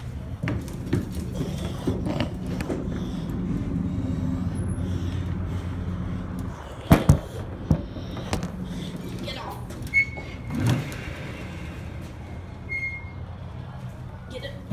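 Coin-operated arcade machine's motor humming steadily, cutting off about six and a half seconds in, followed by two sharp knocks and later two short high beeps.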